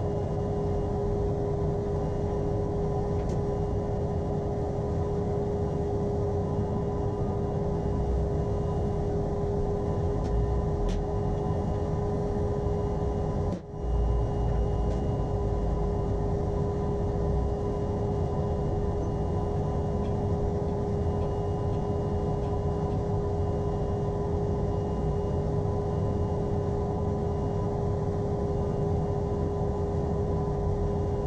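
A steady mechanical drone with a constant hum, unchanging throughout except for a sudden dropout lasting an instant about fourteen seconds in.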